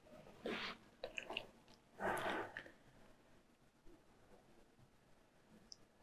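Two faint sniffs, about half a second and two seconds in, with a few small mouth clicks between them, from a woman who has paused, holding back tears.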